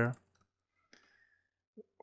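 A faint single computer mouse click about halfway through, otherwise near silence; a voice trails off at the very start.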